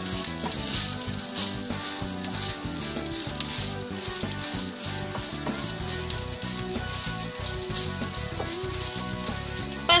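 Shredded chicken and diced bell peppers sizzling in a little oil in a frying pan while a wooden spoon stirs them, with a steady hiss throughout. Background music plays under it.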